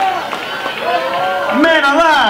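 A man's voice over a live venue's PA between songs, loud from about one and a half seconds in, with other voices from the room before it.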